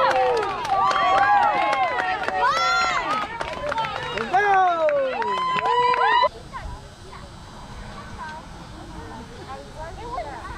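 Spectators and players cheering and shouting in many overlapping high voices as a runner scores. The cheering cuts off abruptly about six seconds in, leaving quieter open-air ambience with faint distant voices.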